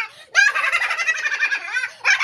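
A man's voice in a high-pitched, rapidly warbling cackle: one long burst after a brief pause at the start.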